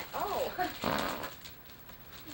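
A small dog whimpering in quick rising-and-falling cries, followed by a short rough huff about a second in.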